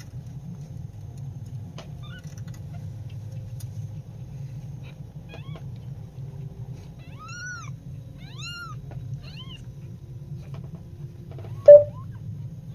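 Young kittens mewing: a few faint short mews, then a run of four or five clearer high, arching mews around the middle, over a steady low hum. Near the end comes one sudden, much louder short sound.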